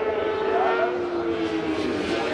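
1000 cc superbike racing motorcycles running hard on the circuit. Two engines can be heard at once, their notes falling slowly in pitch.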